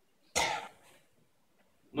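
A single short cough about a third of a second in.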